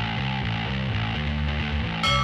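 Background rock music with distorted electric guitar and a steady, driving rhythm, cutting in abruptly right at the start.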